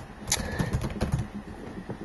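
Computer keyboard keys clicking in an irregular run as a password is typed.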